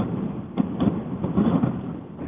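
Steady rushing hiss and rumble of an open conference-call telephone line, with faint, indistinct voice sounds in the middle.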